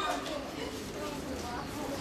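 Indistinct voices talking quietly among a group of people, over steady outdoor background noise.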